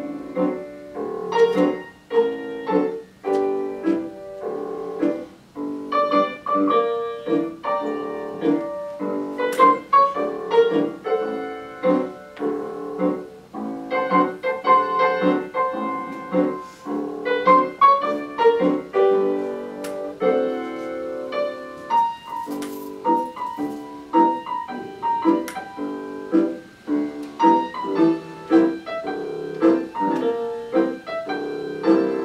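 Solo piano music played back from a CD: a steady run of notes and chords with no pauses.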